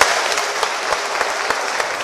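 Audience applauding: many hands clapping steadily in a hall.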